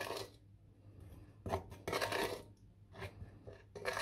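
Wooden spoon scraping and pushing chunks of raw, not fully thawed chicken around a glass baking dish of oily spice marinade: a few short scrapes, most of them in the middle.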